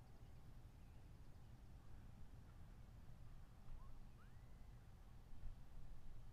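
Near silence: quiet outdoor ambience with a steady low rumble, and one faint, short rising chirp about four seconds in.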